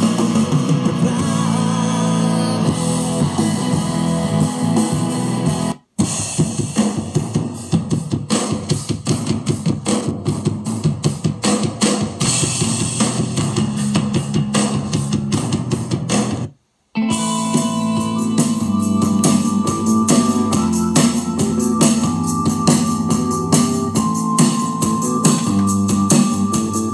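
A song with guitar and drums playing through a Sears cassette boombox's speakers from an iPod, fed in through its RCA inputs with the deck in play-and-record. The music cuts out briefly twice, about six and seventeen seconds in, and a different-sounding piece follows the second break.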